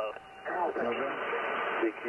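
Hiss of band noise from an HF amateur radio transceiver's speaker between transmissions. It comes up about half a second in, once the other station's voice has stopped, and holds steady until just before the end.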